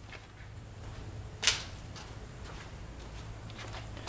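Faint handling noises from someone searching for an item: a few light clicks and one short, sharp swish about a second and a half in, over a steady low hum.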